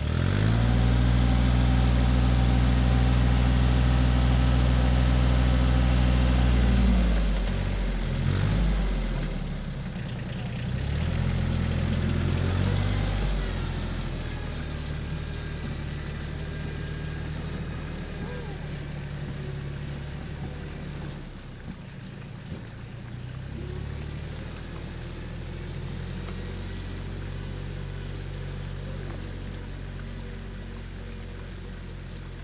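Compact tractor engine working hard as its front loader pushes dirt: it revs up at the start and holds a high, steady speed for about seven seconds, then drops back. It picks up again briefly around twelve seconds, then settles to a quieter, steady running as the tractor moves off.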